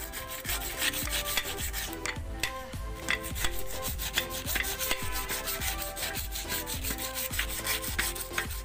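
Small ball-peen hammer tapping a new oil seal into a tractor rear-axle bearing housing plate: quick light metal taps, about four or five a second, driving the seal home.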